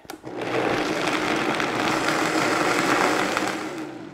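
Vitamix high-speed blender running, puréeing a thick black mole base of cooked chilies, ground spices and broth. It starts at once, runs steadily, and fades out near the end.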